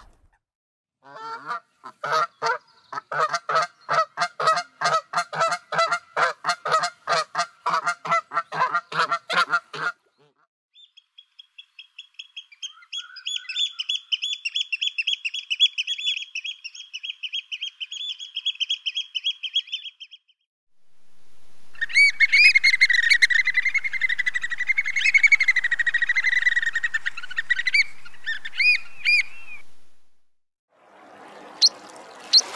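A group of domestic geese honking in rapid, overlapping calls for about nine seconds. Then an oystercatcher's high, fast piping for about ten seconds, and near the end a second oystercatcher piping loudly over a steady rushing noise.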